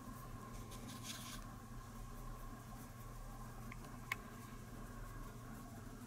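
A paintbrush faintly scratching as it dabs paint into the joints of a cast hydrocal plaster brick model, over a steady low room hum, with one small sharp click about four seconds in.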